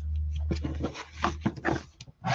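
Cardstock being handled and folded on a cutting mat: several short rustles and light scrapes as the card slides and its edges are lined up. A steady low hum runs underneath and stops about halfway.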